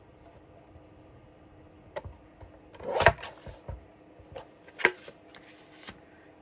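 Lever-arm paper trimmer cutting the tips off patterned scrapbook paper: a crisp cut about three seconds in and a sharper click or chop near five seconds, with light taps of paper being handled between them.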